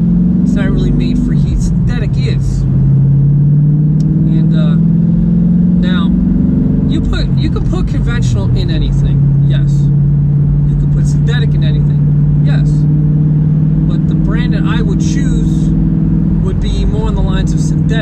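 Car engine heard from inside the cabin while driving. Its note climbs for about five seconds, drops about seven seconds in, then runs steady at a lower pitch. A man talks over it.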